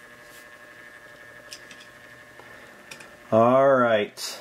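Quiet room tone with a steady faint hum and a few faint clicks as a small die-cast toy car is picked up off a rubber mat. A man's voice makes a short drawn-out vocal sound near the end.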